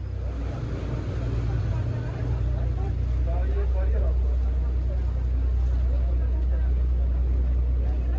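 Motorboat engine running steadily, heard from on board as a loud low rumble that builds over the first few seconds and then holds.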